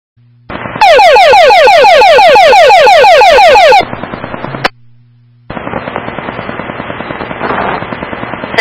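Radio dispatch alert tone heard through a police scanner: a loud run of rapid falling chirps, about seven a second, lasting about three seconds, of the kind that marks priority traffic. It is followed by a short hiss ending in a sharp squelch click, then steady open-channel static.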